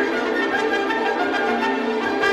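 Orchestral classical music, with bowed strings playing sustained, layered chords at a steady level.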